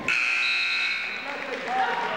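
Gym scoreboard buzzer sounding once for about a second, the signal that a wrestling period has ended, over voices in the gym.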